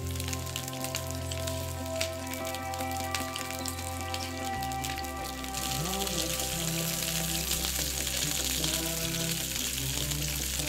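Sausages sizzling in a frying pan, the sizzle getting louder from about halfway through, under background music with long held notes.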